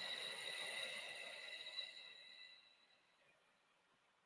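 A woman's slow breath out through the mouth, fading away after about two and a half seconds.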